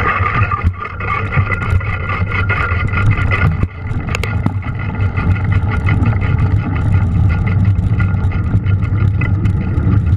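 Mountain bike riding muddy, snowy single track, picked up by a GoPro camera: a steady low rumble of wind and tyre noise with frequent clicks and rattles from the bike over the rough trail.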